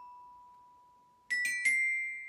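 Samick children's xylophone with metal bars (a glockenspiel), played gently with mallets: one note rings and slowly fades, then three quick notes are struck about a second and a half in and ring on. The soft strokes are meant to let the bars resonate rather than sound harsh.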